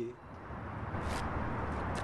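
Steady outdoor city background noise, a low hiss and rumble with no distinct events, after the last syllable of a man's voice at the very start.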